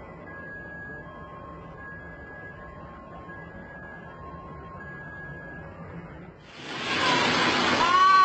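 A steady low rumble with a faint two-note warning tone alternating high and low, about a note every 0.8 seconds. About six and a half seconds in, a much louder rush of noise from a building demolition collapse sets in, with a voice crying out over it.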